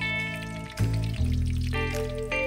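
Background music with held notes and a bass line, the chord changing about a second in, over oil sizzling as pig's feet fry in a pan.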